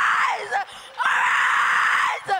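A girl screaming into a handheld microphone. One scream trails off about half a second in, there is a brief break, and a long, steady scream follows from about a second in.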